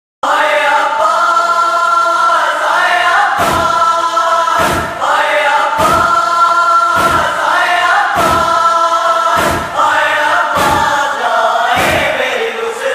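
Nauha lament intro: a chorus of voices holding long, sustained chanted notes. From about three seconds in it is joined by a heavy thump roughly once a second, the beat of matam (chest-beating) that keeps time in a nauha.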